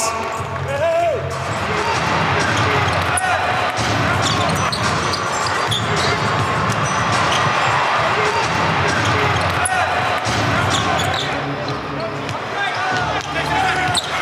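A basketball being dribbled on a hardwood court over a steady bed of arena noise.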